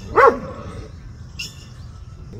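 A dog barks once, a short bark that rises and falls in pitch, about a quarter second in. A brief high-pitched chirp follows about a second and a half in.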